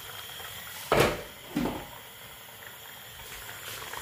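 A pot of meat simmering in its stock, a steady bubbling hiss. A sharp knock comes about a second in, and a softer one follows about half a second later.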